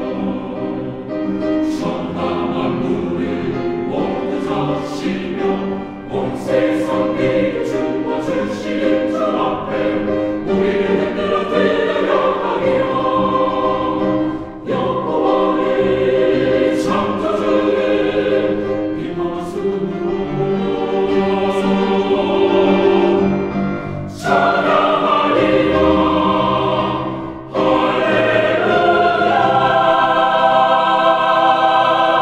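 Chamber choir singing a Korean sacred choral anthem in sustained multi-part harmony, with short pauses between phrases.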